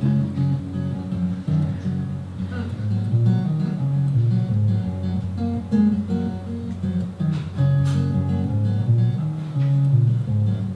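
Solo steel-string acoustic guitar playing the instrumental intro of a folk song, a continuous pattern of picked and strummed chords with no singing yet.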